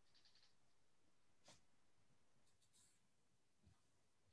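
Near silence: faint room tone with one faint click about a second and a half in and a few faint ticks shortly after.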